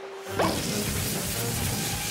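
Cartoon sound effect of air hissing out of the valve of an inflatable pool float: a quick rising squeak about half a second in, then a steady hiss as it deflates.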